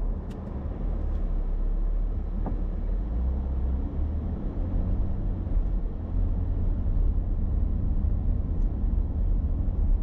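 A car's engine and road noise as a low rumble inside the cabin, picked up by a dashboard camera, as the car pulls away from a stop and gathers speed; the rumble grows louder from about three seconds in.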